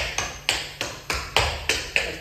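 Tap shoes striking a wooden floor in a quick, even run of sharp taps, about four or five a second, as steps of the shim sham tap routine are danced.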